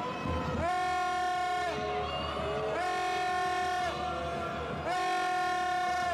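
A horn blown in three long blasts about two seconds apart, each about a second long and bending in pitch slightly as it starts and stops.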